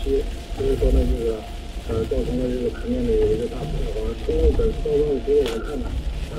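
Inside a car driving in heavy rain: steady low road rumble and rain hiss on the car. Over it comes a recurring low wavering tone in stretches of about a second, with short gaps between them.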